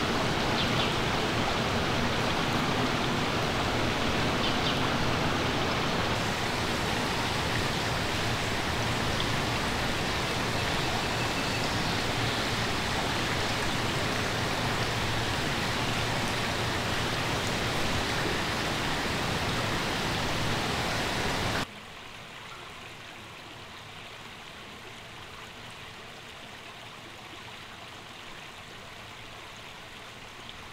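Creek water flowing over rocks as a steady rushing noise. About two-thirds of the way in it cuts off abruptly to a much quieter, gentler flow.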